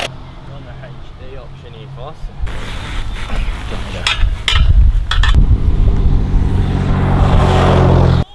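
An engine running with a steady low hum, growing louder about two and a half seconds in, with faint voices early on.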